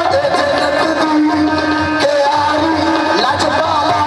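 Live qawwali: male voices sing long, wavering held notes over sustained harmonium chords, with occasional tabla strokes.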